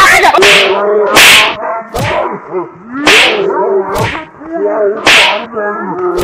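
Four sharp whip-crack sound effects marking blows from a stick, with a voice crying out between them.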